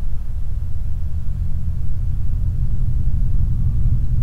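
A steady, low rumbling drone from a horror film's soundtrack, getting a little louder in the second half.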